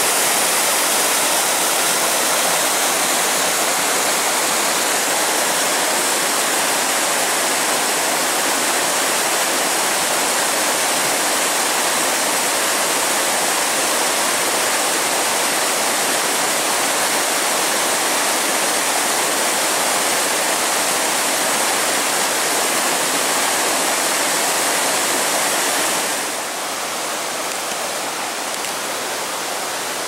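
Rushing water of a rocky mountain stream, white water running over boulders: a steady, even rush that drops a little in loudness near the end.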